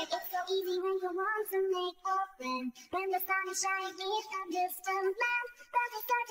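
A man singing in a high voice: a melody of held notes with short breaks and small slides between them.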